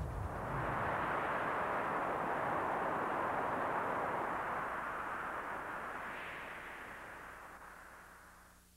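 Rushing wind sound effect: a steady, noisy rush with no pitch that swells in during the first second and fades away over the last three seconds.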